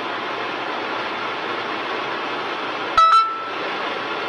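Steady road and tyre noise heard inside a moving car. About three seconds in, a short sharp click with a brief ringing tone stands out above it.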